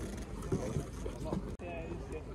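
Voices of people talking in the background over a low rumble of wind on the microphone, with a brief dropout about one and a half seconds in.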